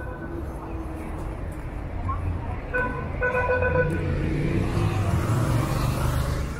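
Downtown street traffic with a steady low rumble of passing vehicles. About three seconds in, a car horn sounds twice: a short toot, then a longer one.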